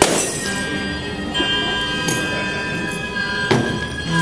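A hammer smashing glass bottles into shards: one sharp crash at the very start that rings on, and another about three and a half seconds in. Background music with sustained notes plays throughout.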